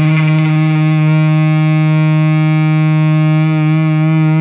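Electric guitar played through a Zonk Machine–style germanium fuzz pedal (OC71, OC44 and 2G374 transistors) in its Fat mode, holding one long sustained fuzzed note with a slight wobble near the end.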